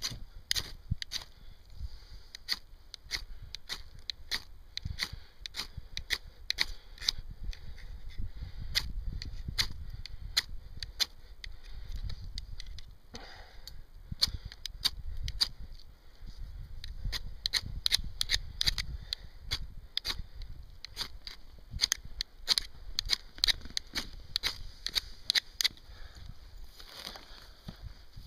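Ferro rod fire starter scraped again and again with a metal striker to throw sparks into a tinder bundle of newspaper and dry grass: quick sharp scrapes in bursts, with a short pause just after the middle and faster strokes near the end. Wind rumbles on the microphone through the middle.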